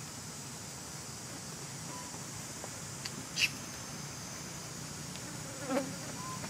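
Insects droning steadily at a high, even pitch, with a brief sharp sound about three and a half seconds in and another short sound near the end.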